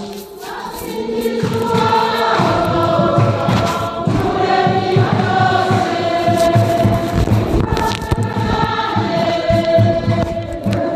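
A choir singing a religious song, several voices holding long notes over a steady low beat. The full sound comes in about a second and a half in, after a brief quieter moment.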